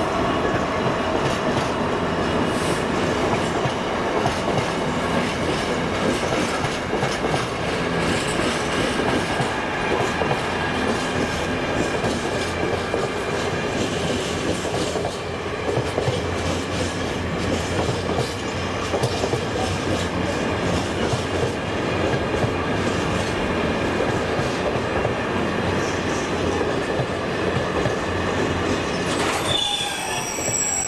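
Loaded container flat wagons of a freight train rolling past at speed, a steady heavy rumble with wheels clattering over the rail joints and a thin steady wheel squeal running through it.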